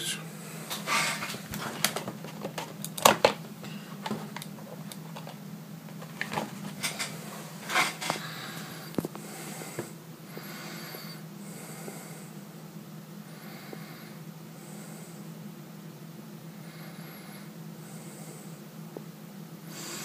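Quiet room tone with a steady low hum. In the first half a handful of short clicks and rustles come from handling the Raspberry Pi's cables and the camera. After that only the hum remains, with faint soft noises.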